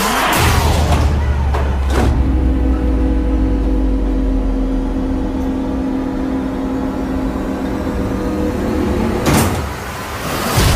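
Trailer sound design: a whoosh, then a deep sustained drone under a long held chord. Another whoosh sweeps through near the end.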